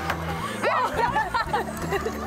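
Overlapping voices, chuckles and studio chatter over steady background music.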